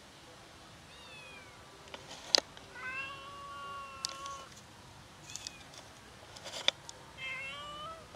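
Stray kittens meowing: two drawn-out, high meows, one about three seconds in and one rising near the end, with a fainter falling call about a second in. A few sharp clicks stand out between them, the loudest just before the first long meow.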